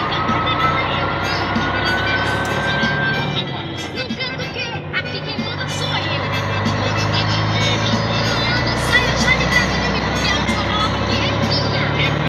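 Truck engine running steadily at road speed, heard from inside the cab, with music and a voice playing over it.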